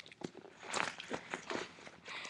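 A book being handled close to the microphone: crackling rustles and a run of small irregular clicks.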